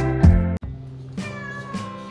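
Music with struck notes stops abruptly about half a second in. Then a black-and-white domestic cat meows, one drawn-out, slightly falling call in the second half, over faint background music.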